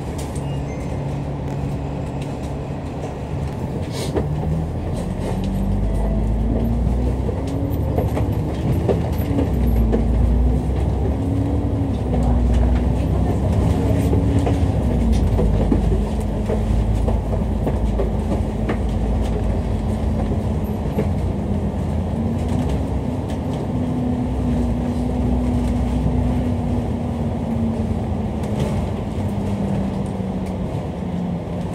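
Dennis Enviro500 MMC double-decker bus's engine and drivetrain heard from inside the upper deck: a deep rumble with a whine that climbs in pitch and grows louder a few seconds in as the bus accelerates, then runs steadily with a slight rise and fall.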